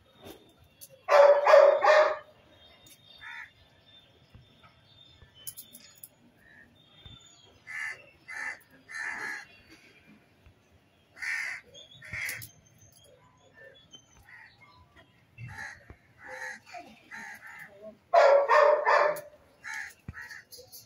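Crows cawing: a run of three loud, harsh caws about a second in and another run near the end, with fainter, shorter calls in between.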